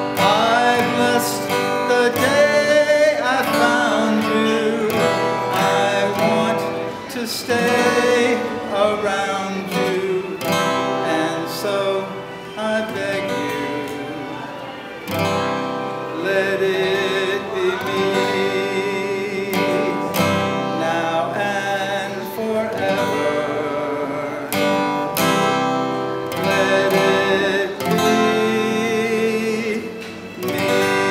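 A man singing a slow love song to his own strummed acoustic guitar.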